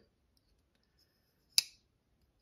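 Titanium liner-lock folding knife snapping shut: one sharp metallic click about a second and a half in.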